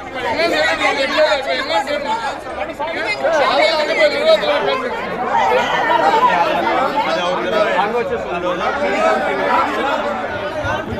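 Crowd of men arguing in a large hall, many voices talking loudly over one another.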